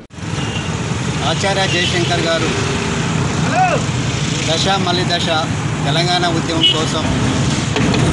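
Road traffic on a highway: trucks and other vehicles pass with a steady engine rumble and tyre noise, and faint voices sound in the background.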